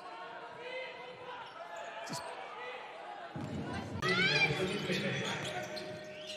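Basketball arena game sound: a quiet crowd hum with a single knock about two seconds in. From a little past halfway it grows louder, with crowd noise, a basketball bouncing on the hardwood court and a few short rising squeaks.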